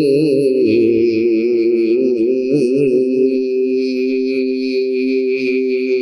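Male reciter holding one long melodic note of Quran recitation (tilawat), the pitch wavering in ornaments for the first few seconds and then held steady.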